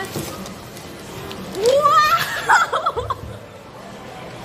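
A woman's high-pitched laugh, rising and breaking up, from about a second and a half in, over background music.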